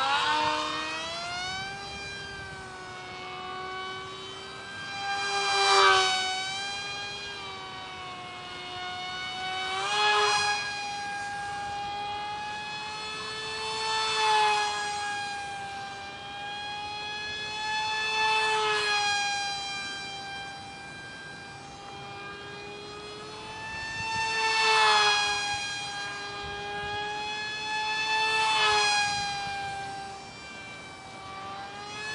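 Tiny 8 mm electric motor spinning a direct-drive prop on a micro foam delta wing: a steady high whine with many overtones. It swells loud and bends in pitch each time the plane passes close, about seven times, every four to six seconds.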